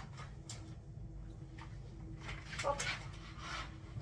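Kitchen handling sounds: a few light clicks, then a longer rustling scrape about two and a half seconds in, under a woman's brief 'oh'. A faint steady hum runs beneath.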